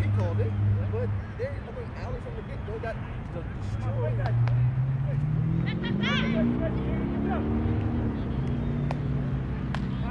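A low motor hum with even overtones that rises in pitch about halfway through and falls back a few seconds later, over scattered distant shouts from players and spectators.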